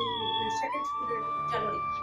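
A faint, distant voice, quieter than the lecturer's miked speech, under a thin whistling tone that wavers in pitch and then holds steady.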